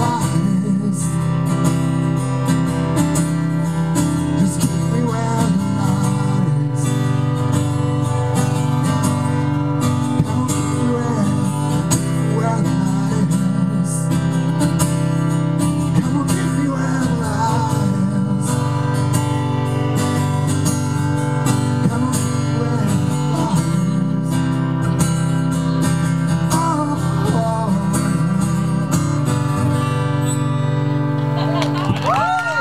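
Acoustic guitar strummed steadily in a live solo performance, the strokes even and unbroken throughout.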